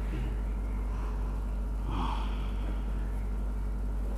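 Steady low hum of room noise, with a brief breathy sound about two seconds in.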